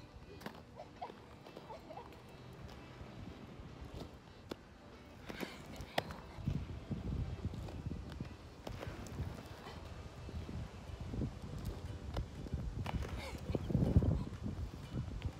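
Quad roller skate wheels rolling on a concrete skate park surface: a rough low rumble that starts about halfway in and grows louder near the end as the skater comes close, with scattered knocks of wheels and skates on the concrete.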